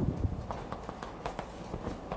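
Chalk tapping and scraping on a blackboard as characters are written: a quick string of sharp, irregular taps.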